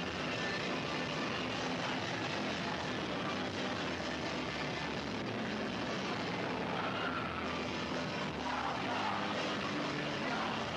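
Live hardcore punk band playing loud distorted guitars, bass and drums, overloaded into a steady dense roar on a camcorder microphone, with shouting near the end.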